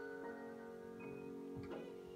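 Cello and grand piano playing a very soft passage of classical chamber music: held notes fade slowly, and a few quiet new notes enter.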